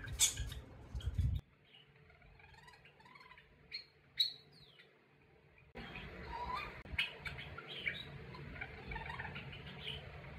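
Budgerigar muttering and chattering softly to itself while half-asleep, many short high notes strung together from about six seconds in. Before that, the budgerigar's mimicked call "kamachi!" right at the start, then a quieter stretch with a couple of brief chirps.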